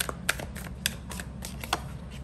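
Tarot cards being handled as the deck is picked up and a card is drawn: an irregular run of light, sharp card clicks and flicks, about eight in two seconds, over a faint steady low hum.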